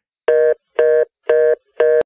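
Four short electronic beeps, all at the same steady pitch, spaced evenly at about two a second.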